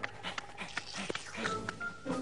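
Cartoon dog vocalizing over light background music, with scattered short clicks.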